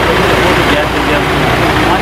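Men's voices talking in a group, overlapping and indistinct, over a steady low rumble.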